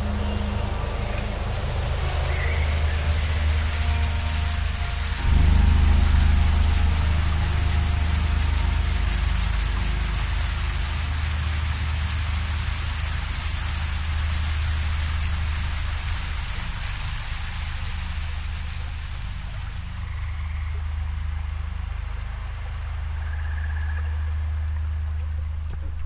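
A low, sustained ambient music drone over a steady wash of running river water. The drone swells louder about five seconds in and then holds.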